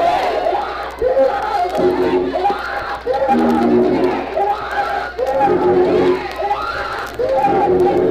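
Organ playing held chords that change every second or so, under a congregation shouting and calling out.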